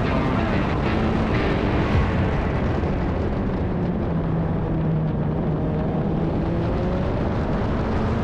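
Toyota GTC race car's engine running at speed on track, heard from a roof-mounted onboard camera with heavy wind rush over it; the sound stays steady throughout.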